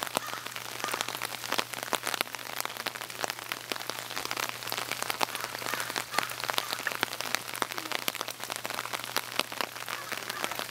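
Steady rain falling: a continuous hiss with a dense, irregular patter of individual drops, over a faint low hum.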